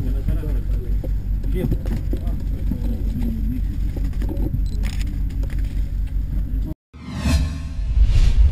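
A steady low rumble like an idling vehicle engine, with people talking over it. It cuts off abruptly near the end, followed by a whoosh sound effect.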